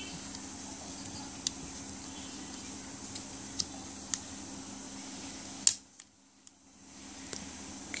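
A few small sharp clicks of hands handling a clear plastic action-camera waterproof housing, over a steady low background hum. A louder click comes about three quarters in, and the sound then drops out for about a second.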